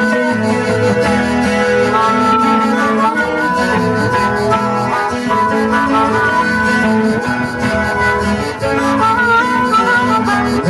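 Harmonica playing an instrumental melody over a strummed twelve-string acoustic guitar, with a few bent, sliding notes near the end.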